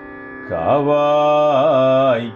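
A man's voice chanting a Tamil Shaiva devotional invocation in a Carnatic style over a steady drone. The voice enters about half a second in and holds one long note, with a brief wavering turn near the end.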